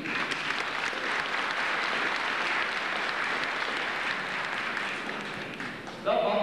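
Audience applauding, a steady dense clapping that eases off near the end.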